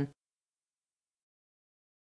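Dead digital silence, after the last word of a voice breaks off just as it begins.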